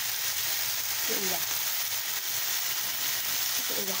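Chicken, carrot and celery sizzling steadily in a hot wok as they are stir-fried.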